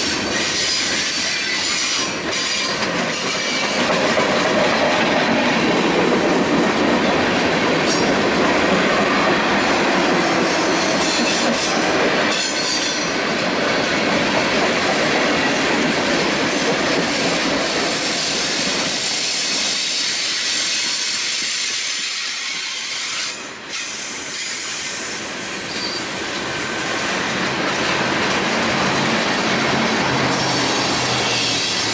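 Freight cars (tank cars, then covered hoppers and gondolas) rolling slowly past close by, steel wheels squealing against the rail on the curve, with a steady grinding rumble and some clicking over rail joints.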